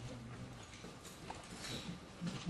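Faint meeting-room background: a low murmur with a few small clicks and rustles.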